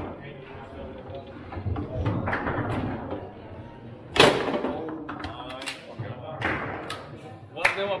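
Foosball table in play: the ball and rods give several sharp knocks against the plastic players and table walls, the loudest about four seconds in, with people talking over it.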